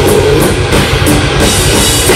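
Loud live thrash metal: distorted electric guitars and bass over a drum kit, with cymbal strikes repeating at a steady pace.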